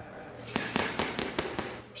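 Boxing gloves striking a punching bag in a quick run of sharp smacks, about five a second, over a steady low hum.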